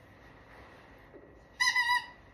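One short, high-pitched squeak with a slight warble near the end, lasting under half a second.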